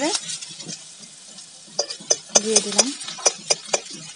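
A metal spatula stirs and scrapes chopped vegetables frying in oil in an iron kadai, over a sizzle. From about two seconds in, a quick run of sharp clicks comes as the spatula knocks against the pan.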